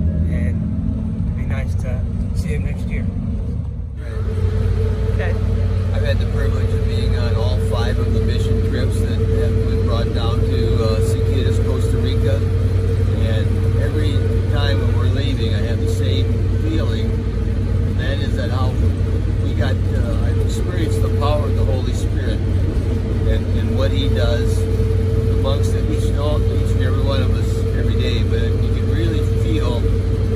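Cabin noise inside a moving minibus: a steady low engine and road rumble, joined at about four seconds in by a constant hum, with indistinct talking over it.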